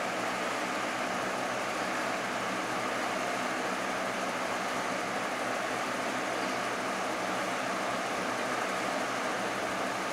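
Electric fan running: an even, unbroken noise with a faint low hum underneath.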